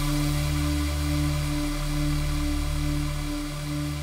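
A steady low electronic drone of several held tones over a hiss, music-like.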